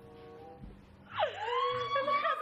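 A woman's long, high-pitched squeal about a second in, swooping down at first and then held, rising slightly, over faint background music.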